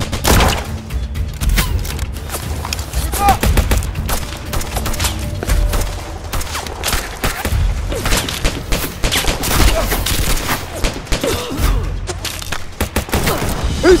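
Sustained battle gunfire: many rifles and automatic weapons firing in dense, overlapping shots with a deep rumble underneath, and faint shouting in the background.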